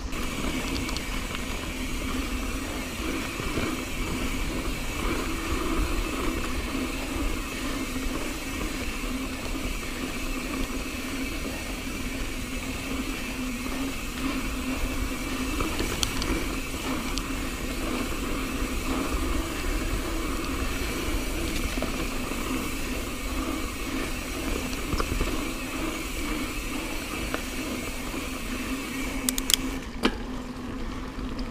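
Mountain bike rolling along a dirt singletrack: steady tyre-on-dirt and drivetrain noise mixed with wind on the camera, with a sharp click about halfway through and a few clicks near the end.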